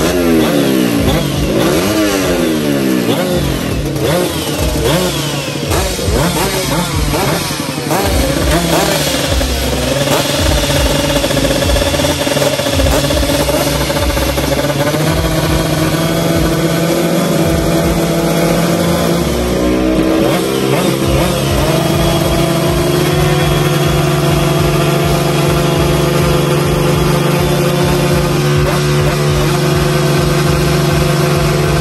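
Vespa drag bike's engine being revved in quick throttle blips for the first few seconds, running unevenly for a while, then settling to a steady idle about twenty seconds in.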